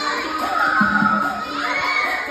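A group of young children shouting and cheering together, rising to a peak about halfway through, over dance music with a thumping bass.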